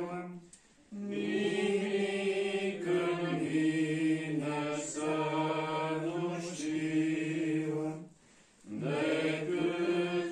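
Congregation of men singing a slow hymn together from hymnbooks, in long held notes. They break off twice for breath, about a second in and near the end.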